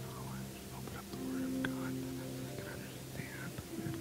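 Many people praying at once in low, whispered and murmured voices, over soft background music of long held chords that change about a second in and again near the end.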